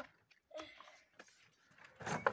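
Near silence, with one faint short sound about half a second in.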